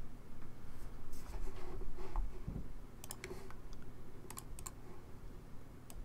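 Scattered clicks and taps of a computer keyboard and mouse, with a quick cluster of clicks about three seconds in and another a little past four seconds.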